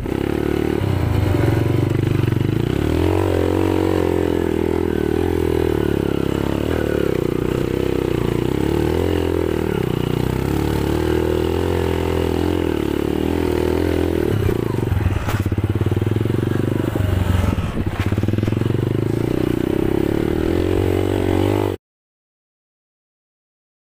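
Dirt bike engine running at low, fairly even revs as the bike is ridden along a narrow grassy trail, its pitch rising and falling slightly, with some clatter in the middle. It cuts off suddenly just before the end.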